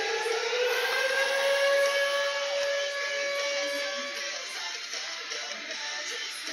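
Ice hockey arena goal horn sounding: its pitch rises like a siren into one long steady tone, which stops about four seconds in.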